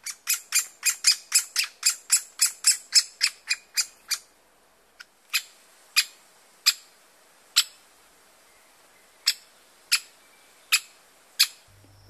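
Great spotted woodpecker nestling calling from its nest hole with sharp, short calls, the calls of a chick waiting to be fed. A fast run of about five calls a second lasts about four seconds, then single calls come about once a second.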